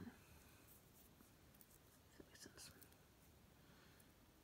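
Near silence: room tone, with a few faint soft clicks and rustles about halfway through, as small items are handled on a cloth.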